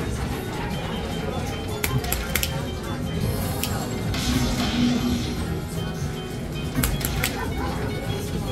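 Dragon Link slot machine playing its hold-and-spin bonus music and effects, with several sharp hits as the reels stop and new fireball symbols land, over background chatter.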